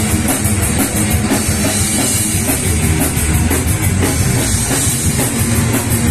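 A live metal band playing loud, with fast, steady drumming and rapid cymbal hits over a heavy low end.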